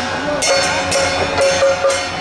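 Traditional temple procession band music: wind instruments play a wavering melody over repeated percussion strikes.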